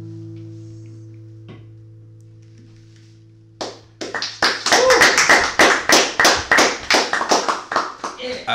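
Final strummed chord of an acoustic guitar ringing out and slowly fading at the end of a song, then clapping by a few people, quick even claps about four a second, from about four seconds in.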